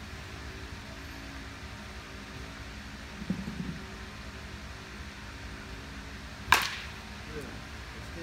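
A baseball bat hitting a pitched ball once, a sharp crack about six and a half seconds in, over a steady hum. A softer dull thud comes about three seconds in.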